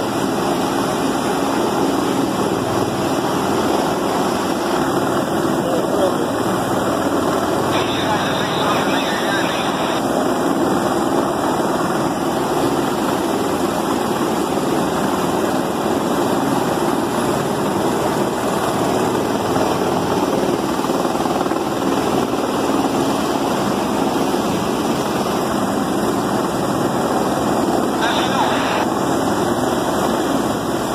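Steady rush of flash-flood water pouring over rocks, mixed with the engine and rotor of a hovering helicopter.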